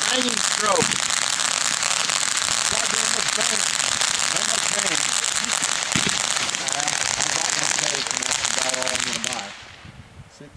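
Black Cat Tropical Thunder consumer firework fountain burning, with a steady dense hiss of spraying crackling stars and a single sharper pop about six seconds in. The crackle cuts off about nine seconds in as the fountain burns out.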